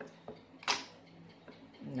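Cardboard phone packaging being handled: a few light clicks and knocks, the sharpest about two-thirds of a second in, as a boxed phone case is lifted out of the phone's retail box. A voice starts at the very end.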